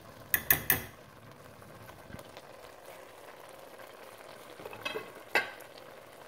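A pot of spinach stew simmering faintly, with three quick sharp knocks against the cooking pot just after the start and two more near the end.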